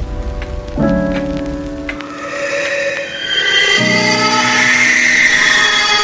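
Background music: sustained synth-like chords that shift every few seconds, with a shimmering, twinkly high layer swelling in from about two seconds in.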